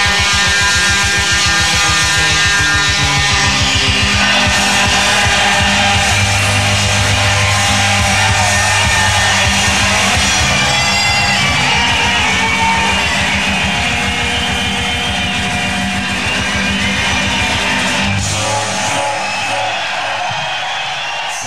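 Live Celtic punk band playing an up-tempo song with a fast, driving beat, the band playing together at full volume. The music stops near the end.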